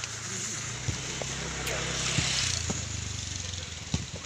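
A volleyball being struck several times in a rally, sharp slaps spread through the few seconds, the strongest about a second, two seconds and four seconds in. Under them runs a steady low motor hum, with faint voices of players.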